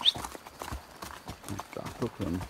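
Horses' hooves clip-clopping at a walk on a dirt track: a run of uneven hoofbeats.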